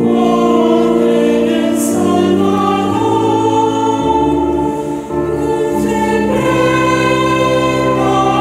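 A choir singing a slow closing hymn in held chords that change every second or two, over sustained low bass notes.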